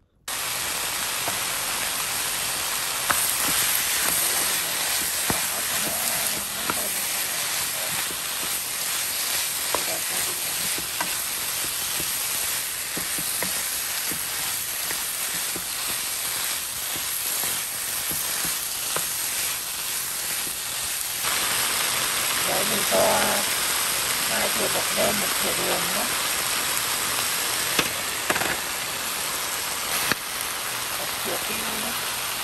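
Sliced boiled pork ear and cheek sizzling steadily as they are stir-fried in a hot pan, with small clicks and scrapes from a wooden spatula stirring them.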